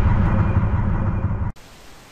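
Deep, noisy rumble of an intro's explosion-like boom sound effect, slowly dying away and cutting off suddenly about one and a half seconds in.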